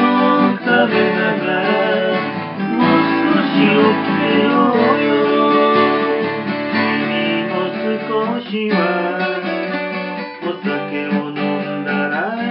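Strummed acoustic guitar in a band's rehearsal run-through of a folk song.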